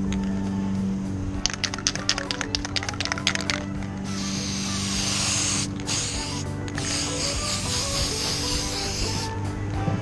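3M Super 77 aerosol spray adhesive: the can's mixing ball rattles quickly for about two seconds as it is shaken, then the spray hisses in three bursts, the middle one short. Background music plays throughout.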